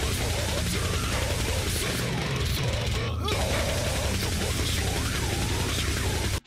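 Deathcore song playing loud: extreme screamed and growled vocals over heavily distorted guitars, a dense unbroken wall of sound.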